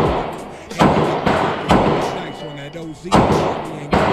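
Four gunshots at an uneven pace, each sharp crack followed by a short ringing echo.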